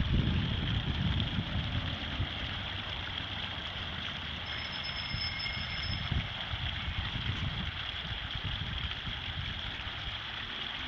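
Small outdoor fountain splashing steadily, its jets falling back into the basin, with wind rumbling unevenly on the microphone.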